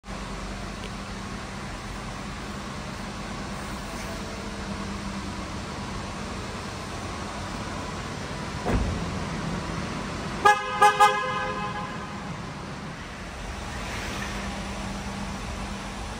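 A low steady hum, then a single thump from the Tesla Cybertruck's door shutting. About two seconds later the Cybertruck's horn gives three short toots. Near the end a soft rising noise starts as the truck moves off.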